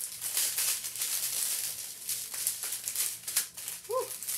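Strip of small plastic bags of diamond-painting drills crinkling as it is unfolded and handled, the tiny drills shifting and rattling inside, as a steady run of crackles.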